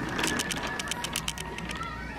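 Shopping cart being pushed, its wheels and basket rattling in a fast, irregular run of light clicks.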